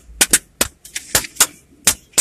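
A person clapping hands: a run of about seven sharp claps in an uneven rhythm, some in quick pairs.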